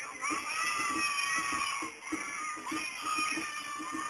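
Japanese festival music (matsuri bayashi): a high bamboo flute playing long held notes, with a break about halfway through, over quick, steady drum beats.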